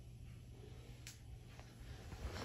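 Near silence: quiet room tone with a steady low hum and a single faint click about a second in.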